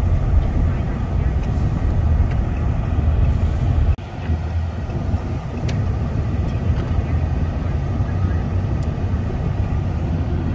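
Road and engine noise heard inside a moving car's cabin: a steady low rumble that breaks off abruptly about four seconds in and then carries on.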